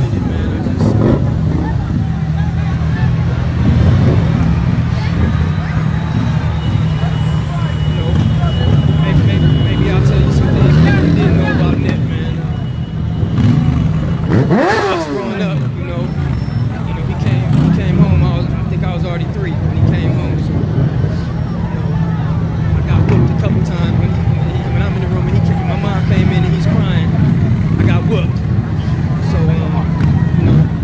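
Crowd voices over the steady low rumble of vehicles moving slowly through a street crowd, with one brief, sharp sweep that falls then rises in pitch about halfway through.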